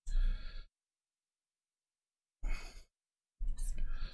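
A man's sigh at the very start, then dead silence, with another short breath about two and a half seconds in and more breathing starting near the end.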